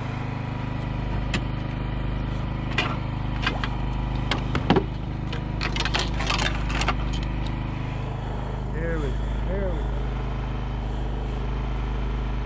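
A small engine running steadily, with scattered clicks and knocks from the bowfishing arrow and line being handled against the boat, thickening into a quick run of rattling clicks around the middle.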